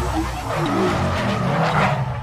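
Sound effect of a car tyre squealing in a burnout: a rough screech over a low rumble.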